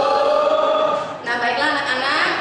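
A class of schoolchildren answering the teacher together in a drawn-out unison chorus, in two long phrases with a short break about a second in.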